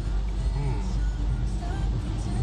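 Steady car-cabin road noise, a low rumble from driving on a wet motorway, with music playing over it.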